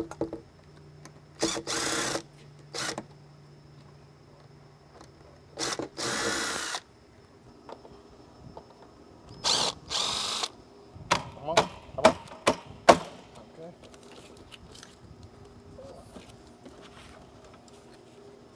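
Cordless drill running in three short bursts of about a second each, backing out the fasteners of an old aluminum window set in a masonry opening. Then a quick run of sharp knocks and squeaks as the loosened window frame is worked out of the opening.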